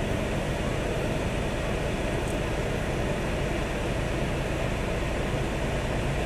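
Steady rushing hum inside a parked car's cabin, from the air-conditioning blower with the engine running, holding level without change.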